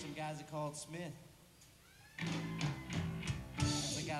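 Live electric blues band: electric guitar and a sung line, then the band drops almost out for about a second before coming back in together.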